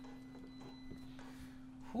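Light handling sounds: a couple of faint clicks from hands on a Onewheel Pint's hard plastic rail guard just pressed into place, over a steady low hum.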